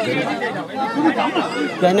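Speech only: several men's voices talking over one another in chatter.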